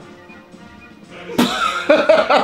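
Faint background music, then about one and a half seconds in a man bursts out in a loud, explosive laugh that goes on in quick pulses.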